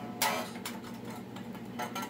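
Electric guitar strummed once about a quarter second in, then quieter picked and muted string ticks, with another chord near the end. A steady low hum runs underneath.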